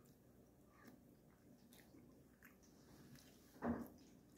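Faint chewing of a mouthful of burrito, with soft wet mouth clicks. A brief louder mouth sound near the end.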